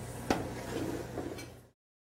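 A metal sauté pan gives a single light knock against the gas range, over steady kitchen room noise with some faint clatter after it. Near the end the sound cuts out to dead silence.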